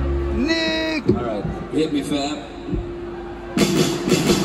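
A rock band on stage between songs: a single note is held steadily under a man's voice at the microphone. About three and a half seconds in, the full band comes in loudly to start the next song.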